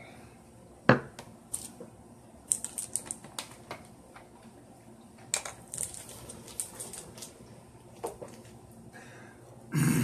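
Irregular light clicks and taps in a small room. There is one sharp knock about a second in, two quick runs of ticking clicks, and a short noisy burst at the very end.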